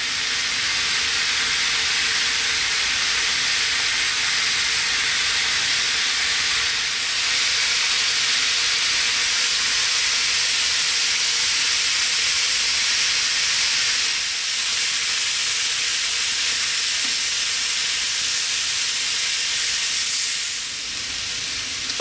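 Chicken and vegetable kebabs sizzling steadily on a hot flat griddle plate over a gas burner, as the marinade fries on the plate.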